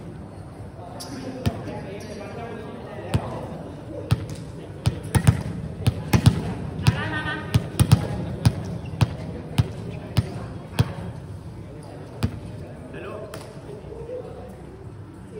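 A volleyball thudding repeatedly on a hard indoor court floor, in a run of sharp single bounces that come about every half second in the middle of the stretch, with voices talking around it.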